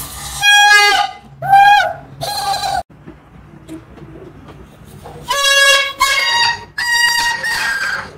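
Short, high-pitched squawking honks from a balloon-blown plastic toy horn, three in quick succession, then a pause. From about five seconds in, four more similar honks follow, fitting dancing cactus plush toys playing the sound back in their repeat mode.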